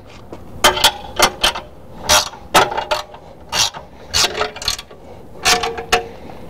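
Steel three-point hitch parts being worked by hand: a series of irregular metallic clanks and rattles, some ringing briefly, as the top link is adjusted.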